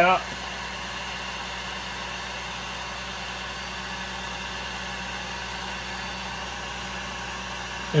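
Electric heat gun running steadily, blowing hot air to reflow and smooth the powder paint on a jig head.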